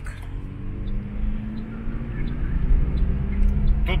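Car driving along a highway, heard from inside the cabin: a steady low road and engine rumble with a faint even drone above it.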